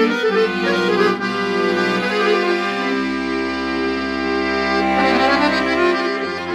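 Dallapé chromatic button accordion played solo: a slow melody of held notes over sustained bass notes that change every second or two. The instrument has just been overhauled and is being played to show its tone.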